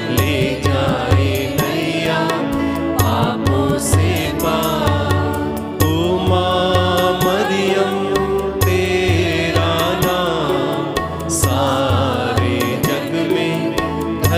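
A group of women singing a devotional hymn together over instrumental music with a steady low beat.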